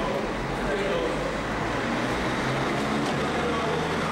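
Glass landing doors of an Otis traction lift sliding shut, worked by a door operator set below the doors, with a steady low mechanical hum under distant background voices.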